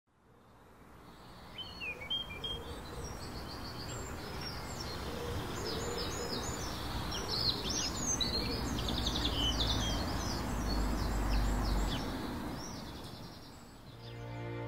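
Birdsong: many short chirps and trills from several small birds over a steady outdoor hiss, fading in over the first second or two and fading out near the end.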